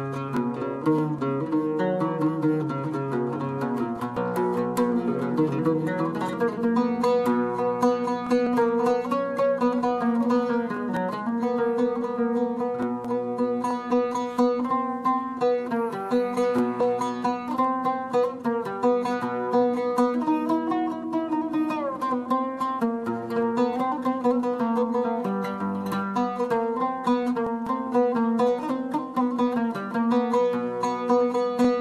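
A new oud played solo, a steady melody of quick plucked notes with no singing.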